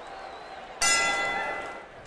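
A boxing ring bell struck once, ringing and fading over about a second, sounding about a second in over the murmur of the arena crowd; it marks the start of a round.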